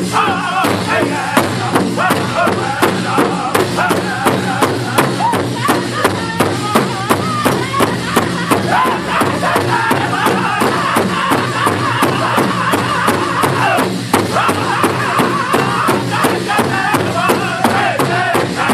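A powwow drum group singing in loud, high-pitched voices while striking a large shared drum together in a steady, even beat.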